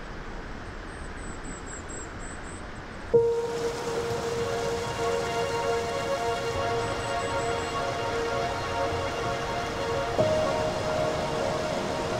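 A forest stream flowing steadily; about three seconds in, louder rushing water takes over and sustained music notes come in, changing to a new note near the end.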